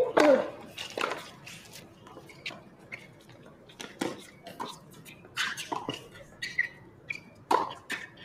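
Tennis rally on a hard court. A serve struck with a grunt opens it, and racket strikes on the ball follow back and forth about once a second, some with short grunts from the players.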